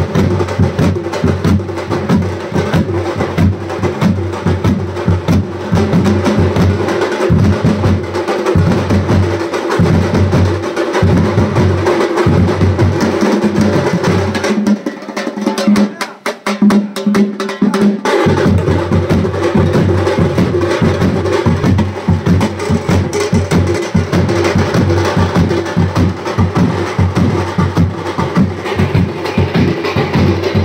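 A troupe of large shoulder-slung barrel drums beaten with sticks in a fast, dense rhythm. About halfway through, the deep strokes drop out for a few seconds while lighter drumming carries on, then the full group comes back in.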